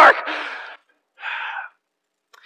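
A man's spoken word trails off at the start, then a short audible breath follows about a second in, close to the microphone.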